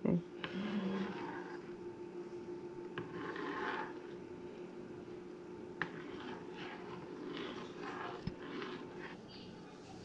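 A spoon stirring hot milk and chocolate in a pan on a gas stove, with soft scraping over a steady low hum and faint voices in the background. One sharp click about six seconds in.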